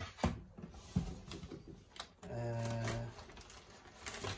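Crinkling and crackling of a foil insulating box liner and plastic food packs being rummaged through, with a few sharper crackles. A little after two seconds in, a steady low hum lasts under a second.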